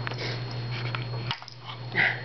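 Baby's breathy huffing and snuffling while playing, with a few light knocks of wooden blocks on a wooden shape sorter in the second half.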